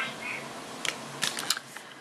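A handful of light, sharp clicks and taps from a plastic makeup kit case being handled, bunched together from about a second in.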